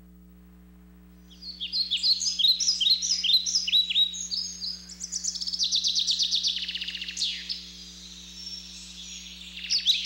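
Birds singing, starting about a second in: a run of quick, high, repeated chirps, then a fast trill in the middle. A steady low electrical hum runs underneath.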